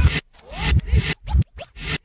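A late-1980s hip-hop track played in reverse, heard as choppy, scratch-like bursts with sliding pitches and a low beat, broken by several short gaps.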